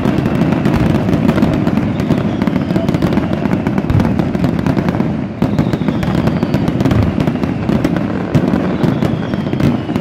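Aerial fireworks in a continuous loud barrage: dense crackling and rapid bangs of bursting shells, with a few faint falling whistles.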